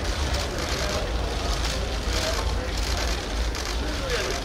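Ambience of a press photo line: a steady low rumble with faint background voices, and short repeated bursts of camera shutter clicks.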